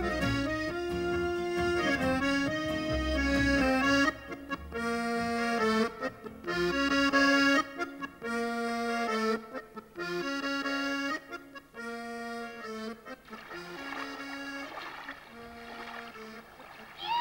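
Piano accordion playing a Swiss folk tune, with a low accompaniment under it for the first few seconds. The accordion then carries on alone in short, detached phrases that grow quieter toward the end.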